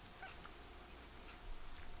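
Faint room tone with a low steady hum, and a couple of faint brief sounds about a quarter second in.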